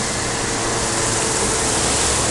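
Steady road traffic noise from vehicles running along a city street, with a faint engine hum, growing slightly louder.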